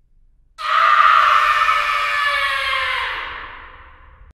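A long scream sound effect that starts about half a second in and then slowly sinks in pitch as it fades away over about three seconds.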